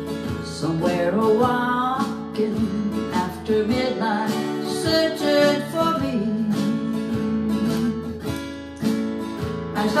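Acoustic guitar strummed in a slow country song, with a woman's voice singing along at times.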